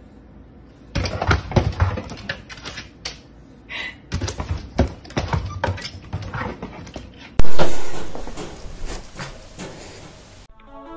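Rapid, irregular rattling and clacking of a pet door's rigid clear plastic panels as a dog paws and pushes at it from outside. About seven seconds in comes a sudden very loud bang that dies away over a couple of seconds.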